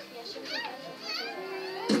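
A child's voice calling out twice in short, high cries that rise and fall, over soft keyboard music with a held note.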